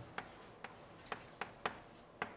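Chalk striking and clicking on a blackboard during writing: about five short, sharp clicks, irregularly spaced.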